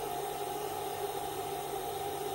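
Steady electrical hum and hiss, with a few constant tones held unchanged throughout.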